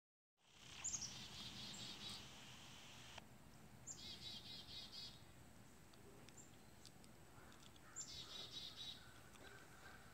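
A songbird singing faintly three times, each short phrase a high opening note followed by a quick run of repeated chirps, a few seconds apart.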